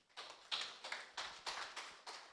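Light applause from a small audience, with separate hand claps audible.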